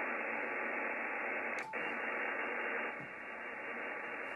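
Steady hiss of HF band noise from a Yaesu FTdx5000 transceiver's receiver in SSB, cut to a narrow voice-width band. It breaks off for a moment about one and a half seconds in, as the radio is switched from the 15 m to the 17 m band, then carries on a little quieter.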